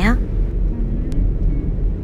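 Steady low rumble of a car heard from inside the cabin, with a faint click about a second in.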